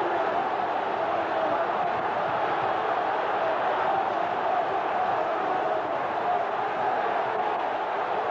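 Steady football stadium crowd noise from an old television match broadcast.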